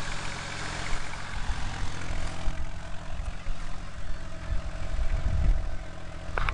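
AMC Eagle 4x4's engine idling steadily, with low uneven rumbling that swells near the end.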